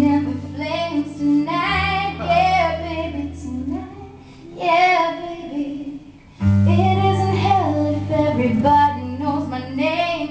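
A woman singing live over an acoustic guitar, with steady low notes held underneath. The music drops briefly about six seconds in, then comes back in full.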